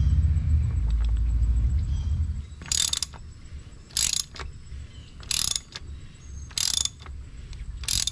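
A hand ratchet with a 1-1/16 inch socket clicks as it backs off the top-mounted oil filter housing cap on a Ford Bronco's 2.7L EcoBoost engine. It gives five short bursts of clicks, about one every 1.3 seconds, starting about two and a half seconds in. A low rumble comes before them.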